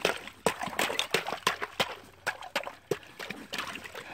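Shallow water sloshing and splashing as hands and a stick work in it, with irregular small knocks and splashes throughout.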